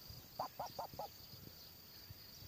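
White domestic duck giving four short quacks in quick succession about half a second in, over water lapping.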